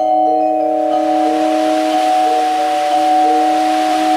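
Percussion ensemble music: mallet instruments hold a soft sustained chord under a gently repeating note figure. About a second in, a steady hissing wash of noise swells in over the chord and stays.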